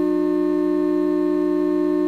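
VCV Rack software modular synthesizer holding one steady drone chord, several pitches sounding together and unchanging, with no beat.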